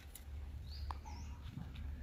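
Faint outdoor background: a few short, high bird chirps about a second in, over a steady low rumble.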